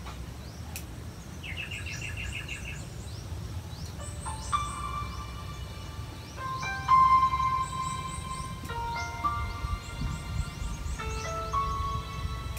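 Slow organ-like keyboard chords begin about four seconds in, each held note changing every second or so. Birds chirp throughout, with a quick run of repeated high chirps near the two-second mark.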